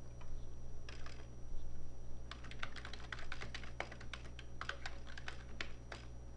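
Typing on a computer keyboard: irregular keystrokes, a couple about a second in, then a quick run of them from about two seconds in.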